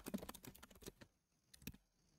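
Faint computer keyboard typing: a quick run of keystrokes in the first second, then a few scattered clicks.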